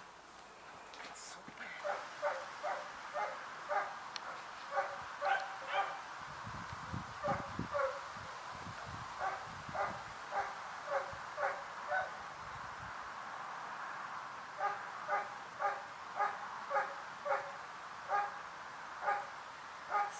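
A dog yipping over and over: short, high calls, about two to three a second, in two long runs with a brief break in the middle.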